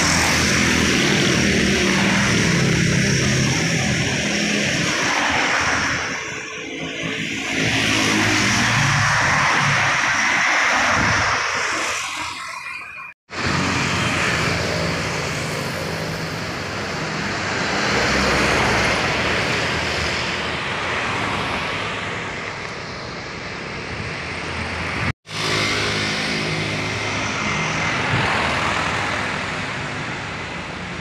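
Road traffic passing close by: motorcycles, cars and a truck, their engines and tyres swelling and fading as each vehicle goes by. The sound cuts out for an instant twice.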